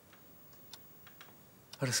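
A few faint, short clicks in a quiet pause, then a man's voice starts near the end.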